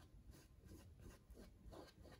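Faint strokes of a paintbrush laying acrylic paint onto canvas: a run of short, soft scrapes, about four a second.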